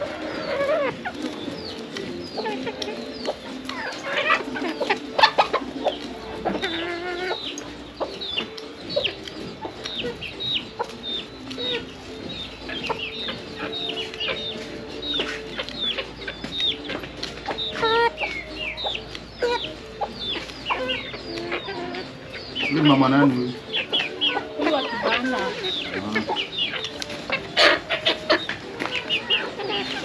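Domestic chickens clucking in a flock, with many short, high-pitched calls throughout and a louder call late on.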